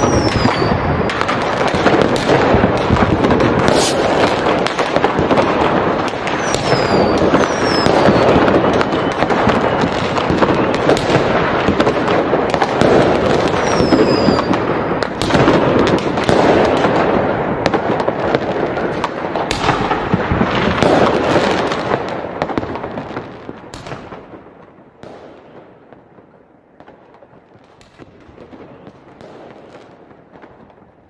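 Fireworks: a dense run of crackling and sharp pops, with a few falling whistles in the first half, dying away over the last third.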